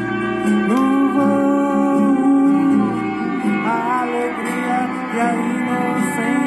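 A Portuguese-language song playing: a singer holding long, sliding notes over guitar accompaniment.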